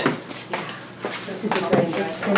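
A few light clicks and knocks of hands handling plastic parts inside an open Toshiba copier, with faint speech near the end.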